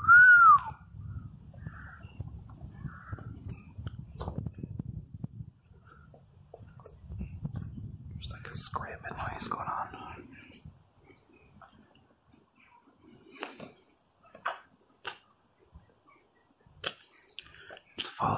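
A man gives one short whistle that rises and then falls, the loudest sound here, as a call for spirits to copy. It is followed by several seconds of low wind rumble on the microphone and then scattered light clicks and taps.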